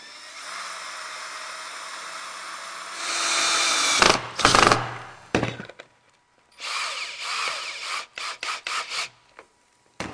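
Power tools working plywood speaker boards: a motor runs steadily and gets louder about three seconds in, then there are a few strong bursts. After a short pause, a quick series of short bursts follows in the second half.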